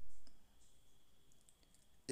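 A short dull thump at the start, then a few faint, brief clicks.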